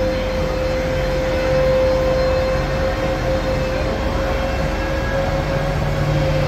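Steady mechanical drone and noise of a large exhibition tent, with a constant mid-pitched whine running through it and no distinct events.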